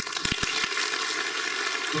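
Audience applauding, the clapping breaking out suddenly and holding steady, with a few low thumps about half a second in.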